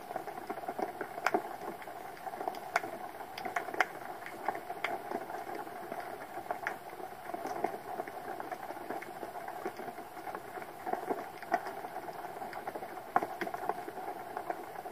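Underwater ambient sound recorded by a camera resting on the sea floor: a steady hiss with irregular sharp clicks and crackles scattered throughout.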